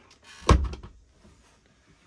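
Compact bathroom door of a Class B motorhome being swung by hand, giving one sharp thud about half a second in.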